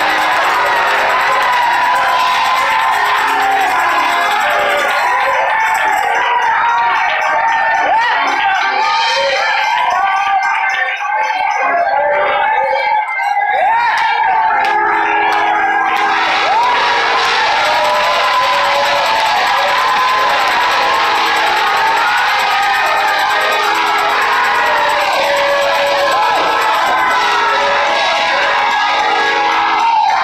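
Church congregation shouting and cheering in praise over organ music with held chords.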